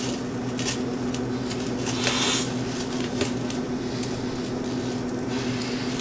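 A person chewing a bite of pizza close to the microphone, with irregular wet chewing noises that are loudest about two seconds in, over a steady low hum.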